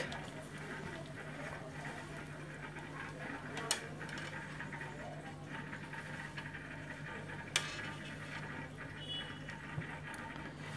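Quiet steady low hum with two brief faint knocks, about four and eight seconds in, as a thermostat's temperature probe and its cable are handled and placed in an aquarium.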